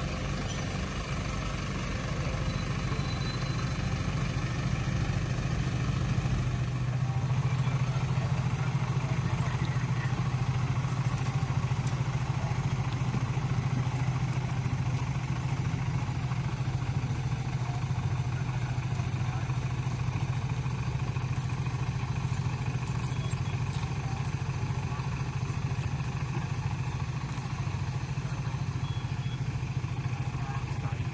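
Road-rail vehicle's engine running steadily as it drives along the light rail track, growing louder about seven seconds in.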